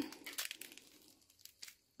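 Faint crackles and small clicks as fingers pry pomegranate seeds loose from the white pith and rind, thinning out after about a second and a half.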